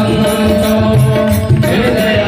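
Hindu devotional aarti music: a sung hymn over sustained instrumental tones, driven by a quick, steady beat of sharp metallic strikes.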